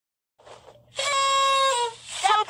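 A high-pitched cartoon-style voice holding one note for about a second, dipping slightly in pitch at the end.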